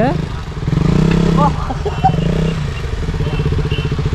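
Motorcycle engine running at a steady pitch that swells and eases, as the bike is ridden up a slope of loose brick rubble.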